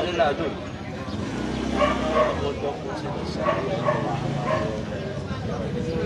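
Indistinct conversation among a small group of men in the street, with their talk running on and off.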